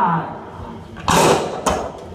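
Live experimental noise performance: a sliding, voice-like wail fades out at the start, then about a second in comes a short, harsh burst of hissing noise, followed by a sharp click.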